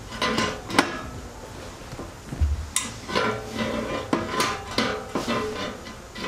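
Metal clinks and knocks of a chrome slip-on muffler and its exhaust clamp being handled and worked onto the motorcycle's header pipe: a sharp clink about a second in, a low thump midway, then a run of light metallic knocks, some ringing briefly.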